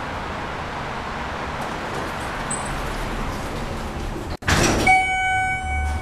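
Schindler 330A hydraulic elevator's stainless steel car doors: steady open-air background noise while they stand open, then a loud sudden thud about four and a half seconds in as they close, followed by a held electronic tone about a second long.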